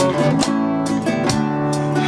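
Nylon-string classical guitar strummed in steady chords, about two strokes a second, over a programmed backing rhythm from a looper pedal.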